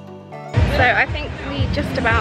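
A faint tail of background music, then a woman talking from about half a second in.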